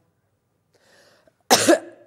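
A person coughing once, a short sudden cough about one and a half seconds in, after a faint intake of breath.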